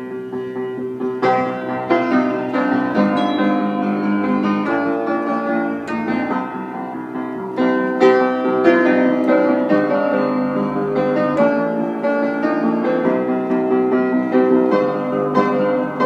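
Upright acoustic piano played with both hands: chords with a melody over them, growing louder about a second in and again about eight seconds in.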